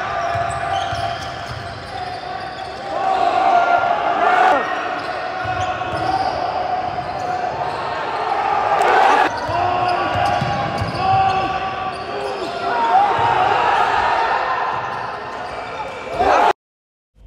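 Live sound of an indoor basketball game in a large, echoing hall: the ball bouncing on the court, with short squeaks and people's voices shouting over it.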